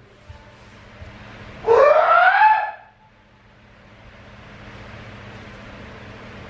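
A single drawn-out wordless cry, about a second long, rising in pitch and dipping slightly at the end, over a steady low hum.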